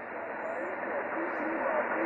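Shortwave transceiver's speaker in upper-sideband mode between transmissions: a steady, narrow-band hiss of band noise with faint, weak voices underneath, slowly growing louder.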